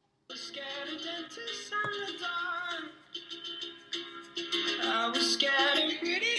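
A pop song with singing playing through a small Vtin Cuber Bluetooth speaker, starting suddenly about a quarter of a second in after a moment of silence.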